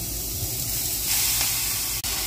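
Leafy greens sizzling and steaming in a hot pot on the stove: a steady hiss that grows louder about a second in.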